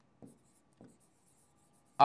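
Near silence broken by two faint taps of a pen writing on an interactive display board, about a quarter of a second in and again just under a second in.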